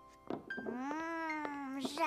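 A young child's voice drawing out one long, wordless sound of delight, like a long "oooh". It rises and then slowly falls in pitch over about a second and a half, after a short breathy burst.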